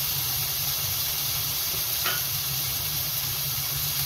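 Tomato-and-spice masala and freshly added beef mince sizzling in hot oil in a frying pan: a steady, even hiss, the mince not yet stirred in.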